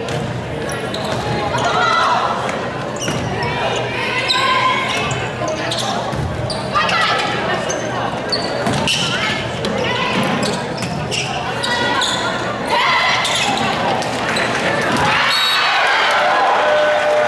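Volleyball rally in a gymnasium: the ball is struck several times among players' calls and spectators' voices, all echoing in the large hall.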